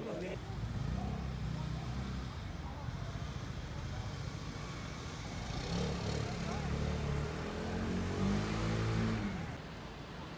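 City street ambience: a motor vehicle engine running close by, with faint background voices. The engine grows louder in the second half and drops away just before the end.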